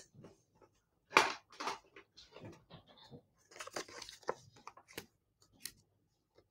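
Hands handling cardstock and a sheet of adhesive foam dimensionals: scattered faint rustles and small clicks, with a louder rustle about a second in and a sharp click near the end.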